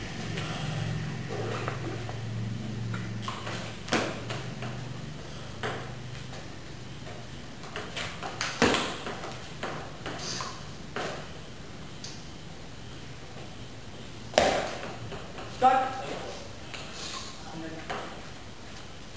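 Table tennis ball clicking off the paddles and bouncing on the table in a slow, irregular rally, with pauses between strokes.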